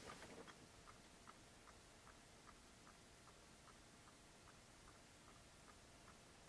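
Solar dancing pumpkin toy's swinging mechanism ticking faintly and regularly, about two to three ticks a second, as it hits its end stops. The ticking shows that the light, about 550 lux, is still enough for it to swing fully to its limits.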